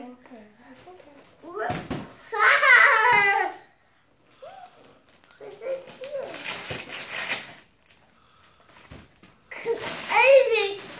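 A young child's high-pitched excited vocalising, loudest a couple of seconds in, followed by rustling of wrapping paper as he handles a wrapped present.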